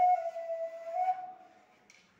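Homemade flute made from PVC pipe playing a held note that dips slightly in pitch and rises again, then fades out about a second and a half in.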